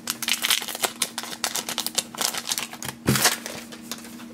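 Foil booster-pack wrapper crinkling and crackling in quick little rustles as the trading cards are slid out of it, with one louder thump about three seconds in. A faint low hum runs underneath.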